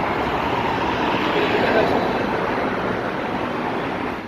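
A steady rushing noise with faint voices mixed in.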